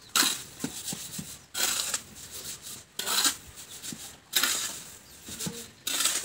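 Shovel scraping and turning a heap of sand-and-cement mortar mixed by hand on the ground: a gritty scrape with small knocks about every second and a half.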